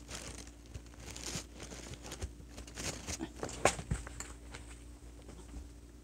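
Faint rustling with scattered soft clicks and knocks, a few of them louder around the middle.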